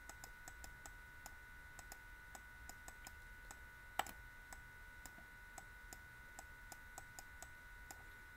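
Faint light clicks of a stylus on a pen tablet during handwriting, a few a second and unevenly spaced, with one louder click about four seconds in, over a faint steady electrical whine.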